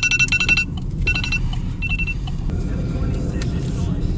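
A car driving, with a steady low rumble of engine and road noise. Over it, a run of short high chirps in the first second, repeated twice more briefly about one and two seconds in.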